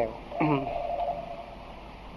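Speech only: a man's voice ends a phrase with one drawn-out syllable that fades about a second and a half in, then a pause with faint background hiss.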